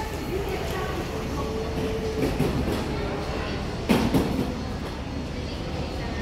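Steady low rumble of a shopping mall's lift lobby with distant voices, and a sudden sharp knock about four seconds in, with a second one just after.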